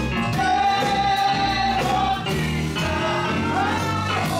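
A group of women singing a gospel song through microphones over instrumental accompaniment, with one long held note in the first half.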